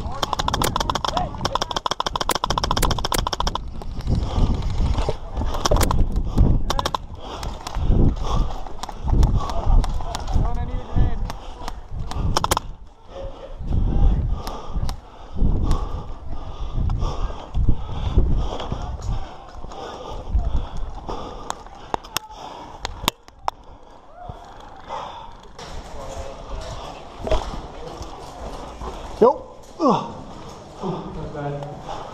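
An airsoft electric rifle fires a rapid full-auto burst lasting about three and a half seconds. It is followed by the player's footsteps on gravel and concrete, gear rattling, and scattered clicks and knocks.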